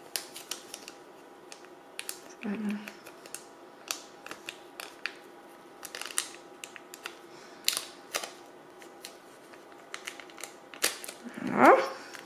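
A small sheet of clear plastic film clicking and crackling in short, irregular snaps as it is folded and creased between the fingers.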